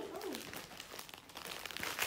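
Faint, irregular crinkling and rustling of gift packaging being handled, heard close to the phone's microphone in a small room.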